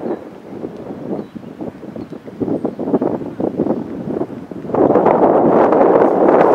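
Wind buffeting the camera microphone, gusting unevenly at first, then a steady, louder rush of wind noise from about five seconds in.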